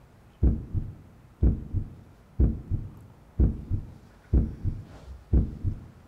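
Heartbeat sound effect: a steady double thump (lub-dub) repeating about once a second, the first beat of each pair stronger, starting about half a second in.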